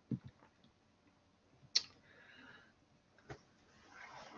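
Faint, sparse clicks in a lull between speech: a sharp click about two seconds in and a fainter one near the end, after a soft low blip at the start.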